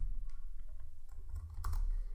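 A few scattered keystrokes on a computer keyboard, light separate clicks over a low steady hum.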